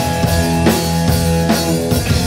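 Hardcore band playing live at full volume: electric bass, guitar and drum kit, with sustained notes over a steady drum beat.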